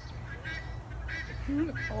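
Farm birds calling in short, repeated calls, about two or three a second. A man's exclamation begins near the end.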